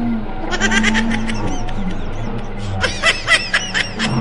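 High-pitched cackling laughter in two quick runs, one about half a second in and a longer one near the end, over a steady low background drone.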